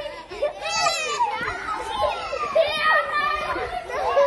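Several children shouting and calling out as they play outdoors, their high voices overlapping and rising and falling in pitch.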